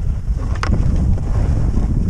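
Wind rushing over a GoPro's microphone during a ski run, a loud low rumble, with skis hissing over snow and one brief sharp scrape just over half a second in.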